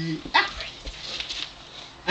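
A baby's short, high squeal about a third of a second in, falling in pitch, followed by softer baby vocal sounds.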